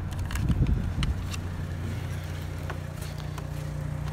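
Steady low hum of an idling car engine, with light clicks and rustles from the inflator and its hose being handled.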